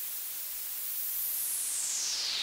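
Synthesized pink noise played through a sweeping resonant filter: a hiss whose bright peak sits near the top of the range and starts gliding downward about three-quarters of the way through.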